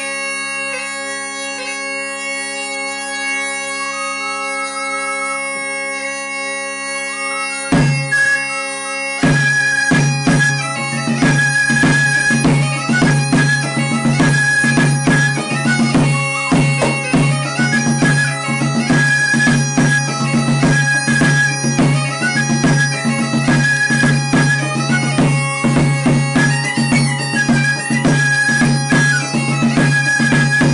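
Mallorcan xeremies (bagpipes) playing a steady drone under a chanter melody. About eight seconds in a drum stroke sounds, and from about nine seconds the tambor keeps a steady beat while the fabiol adds a high melody over the pipes.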